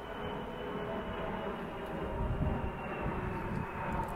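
Aircraft flying overhead at height: a steady engine drone with a few faint held tones over a low rumble.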